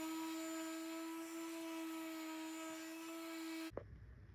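Electric random orbital sander running on a cedar fence board, a steady hum of one pitch over a hiss of sanding. It cuts off suddenly near the end.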